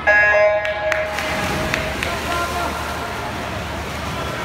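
Electronic starting horn sounding one short beep of about half a second to start a swim race, then spectators shouting over the hall's noise.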